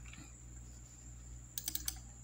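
A quick run of computer keyboard key clicks near the end, over a faint steady low hum.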